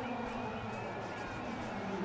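Steady, low background noise of a cricket ground on the broadcast sound, with faint distant voices and no distinct event.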